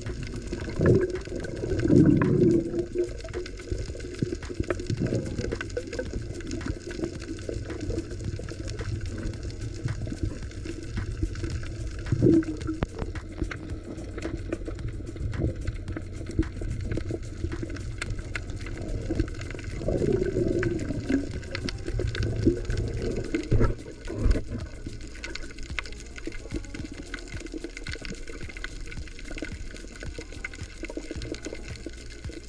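Underwater ambience picked up by a camera in a waterproof housing over a coral reef: a steady low rumble of moving water with a constant fine crackle of clicks, and several louder gurgling swells, the loudest in the first few seconds and around the middle and two-thirds of the way through.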